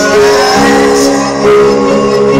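Live band music played loud, with held notes and a short upward pitch glide just after the start.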